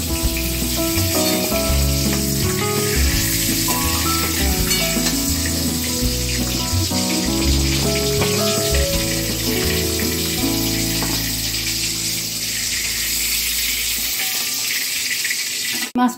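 Whole pointed gourds (potol) frying in hot oil in a steel wok: a steady sizzle. Background instrumental music plays over it, dying away near the end.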